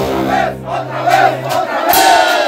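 A brass banda's held low chord, the sousaphones sustaining a note that cuts off about three quarters of the way through. Over it a group of people shout together, with rising and falling yells.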